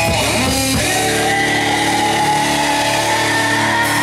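Live heavy metal band playing loud through a club PA: distorted electric guitar, bass guitar and drum kit. A quick riff in the first second gives way to a held, ringing chord.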